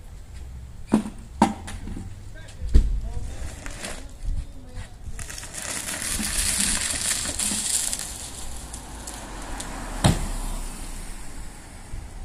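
A large mortar tub dragged scraping along a concrete sidewalk for a few seconds in the middle, with scattered sharp knocks of masonry tools and materials before and after, the loudest near the end.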